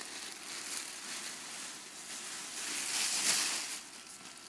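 A hissing noise, mostly high in pitch, that swells to its loudest about three seconds in and dies away near the end.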